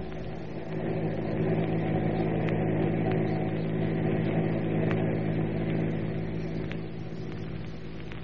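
Car engine running steadily, a driving sound effect in a vintage radio-drama recording. It grows louder about a second in and eases back near the end.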